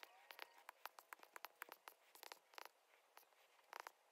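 Faint, quick taps and scratches of a stylus writing on a tablet screen, in irregular runs of short strokes.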